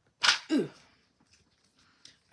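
A short, sharp burst of noise, then a woman's single "ooh" falling in pitch.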